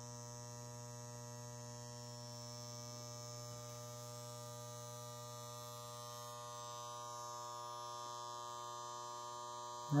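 Quiet, steady electrical hum of a prewar Lionel toy-train setup under power, with the 763E Hudson locomotive standing in neutral: one low hum with a ladder of evenly spaced overtones and a faint hiss above it.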